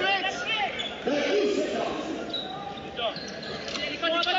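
Basketball game on an indoor court: the ball bouncing, with short high shoe squeaks about two and three seconds in, over voices from players and the crowd.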